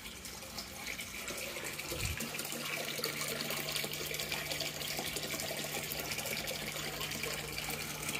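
Water pouring steadily from a hose outlet into a pond, growing louder over the first couple of seconds. A low steady hum joins it about two seconds in.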